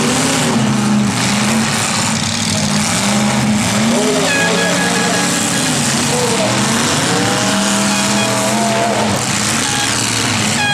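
Demolition derby cars' engines running and revving over a dense, loud wash of noise, their pitch rising and falling. A horn sounds briefly about four seconds in.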